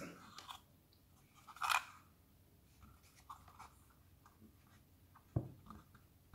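Faint handling of a small plastic RJ12 phone socket box in the fingers: a brief rub a little under two seconds in, a few light ticks, and one sharp plastic click near the end.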